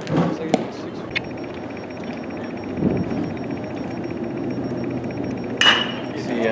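A pitched baseball smacking into the catcher's leather mitt about half a second in, with a second sharp smack near the end. A faint steady high whine with fast even ticking runs through the middle.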